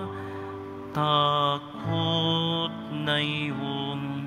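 Slow Tagalog devotional song: a voice holding long notes over soft instrumental accompaniment.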